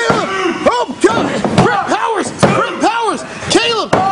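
A few sharp slams of bodies and hands on a wrestling ring mat, about a second apart at first and twice close together near the end, under excited shouting voices.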